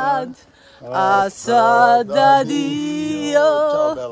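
A few people singing together unaccompanied, with long held notes. The singing breaks off briefly about half a second in and picks up again about a second in.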